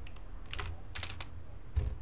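Computer keyboard keystrokes: a handful of separate clicks spread over two seconds, over a steady low hum.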